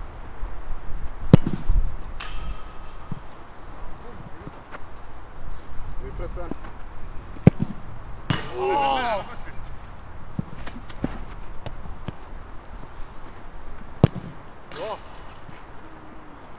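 Football kicked hard three times, sharp thuds of boot on ball about a second in, halfway through and near the end. A drawn-out shout follows the middle kick, and wind rumbles on the microphone at the start.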